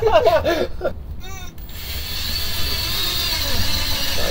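Men laughing for the first second or so, then a steady whirring noise that sets in and grows gradually louder over the last two seconds.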